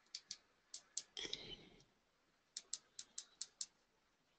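Faint clicks of the buttons on a SanDisk Sansa Clip MP3 player pressed to step through its menu: a few scattered clicks, a short scuffing noise a little over a second in, then a quick run of six clicks, about five a second.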